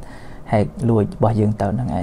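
Speech only: a man talking into a clip-on microphone, after a brief pause at the start.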